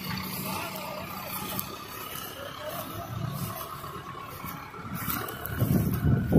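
Tractor engine running steadily while it works the hydraulics of a high-dump sugarcane trailer, with louder low surges near the end.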